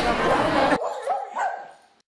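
Chatter of a crowded room that cuts off abruptly under a second in, followed by a few short, high yelping calls that fade out near the end.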